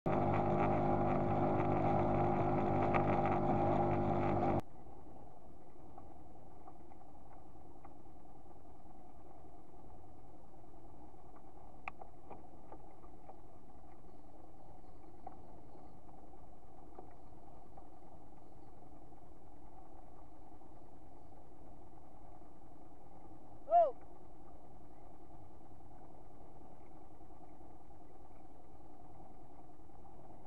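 Small skiff's outboard motor running with the boat under way, its engine note over rushing water, cutting off abruptly about four and a half seconds in. After that a faint steady hum carries on, broken once near the end by a short, loud falling chirp.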